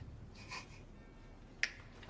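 A single sharp finger snap about one and a half seconds in, over quiet room tone: a signal, after which the armed diners draw their guns.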